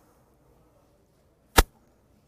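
A single short, sharp click about one and a half seconds in, otherwise near silence in a pause between sentences.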